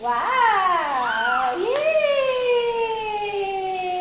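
A toddler's drawn-out vocalising in two long vowel calls: the first rises and falls, the second is longer and slowly falls in pitch. The calls are delighted.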